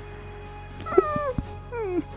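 A domestic tabby cat meowing twice, each call falling in pitch: a longer one about a second in and a shorter one near the end. Background music plays underneath.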